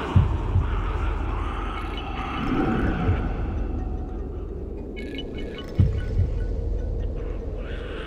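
A steady low drone with slow, paired low thumps like a heartbeat, each pair about 0.4 s apart, one pair at the start and another about six seconds in.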